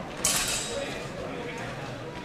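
A sudden metallic clatter about a quarter of a second in, ringing briefly before it fades, over the murmur of voices in a large hall.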